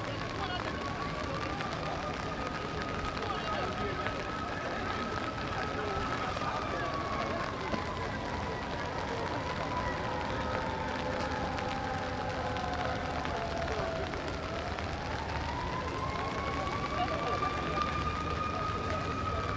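A siren wailing slowly: its pitch rises, then sinks gradually over several seconds, then climbs again near the end, over a murmur of voices.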